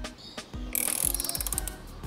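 Socket ratchet clicking rapidly as the transmission drain plug is run back into the motorcycle's transmission case, after a couple of light clicks near the start.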